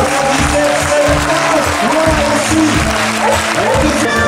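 Audience applauding steadily over music.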